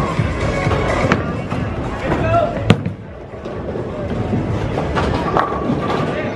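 Bowling alley din: background music and voices, with sharp knocks of bowling balls and pins. The loudest is a single crack a little before halfway through.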